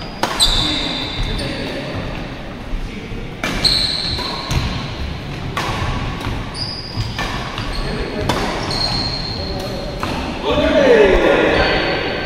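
Badminton doubles rally on a wooden indoor court: sharp racket strikes on the shuttlecock at irregular intervals, with short high squeaks of shoes on the floor, echoing in the hall. A voice calls out near the end as the rally finishes.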